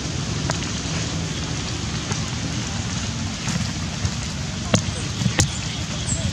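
Steady rain falling on stone and wet ground, with a few sharp drop taps, the loudest two near the end.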